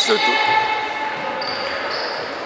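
Basketball game sounds in a sports hall: a basketball bouncing on the wooden floor right at the start, then the hall's echoing court noise. A faint high steady tone comes in past halfway.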